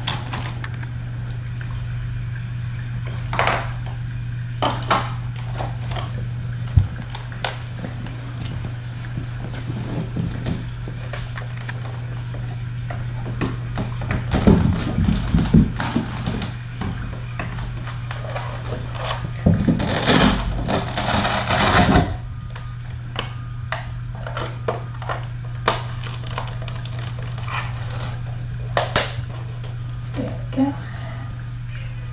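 A steady low hum with scattered knocks and thumps from a person moving about on the floor close to the microphone. Heavier thumps come about halfway through, and a couple of seconds of loud rustling follow a few seconds later.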